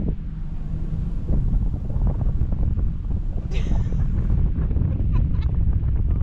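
Wind buffeting a camera microphone during parasail flight: a steady low rumble, with a brief higher-pitched sound about three and a half seconds in.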